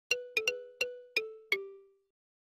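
Short chiming music jingle for a channel intro: six bell-like notes in quick, uneven succession, stepping down in pitch. The last note rings on and fades away.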